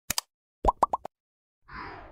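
Short sound effects with no music: a quick double click, then four rapid pops that each rise in pitch, then a soft swish with a falling tone near the end.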